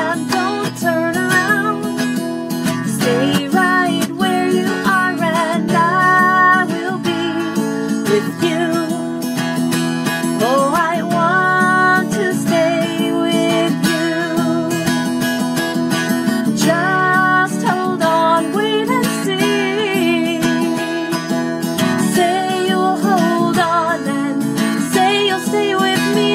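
Music: a strummed acoustic guitar with a wavering melody line above it. This is a wordless passage of a song.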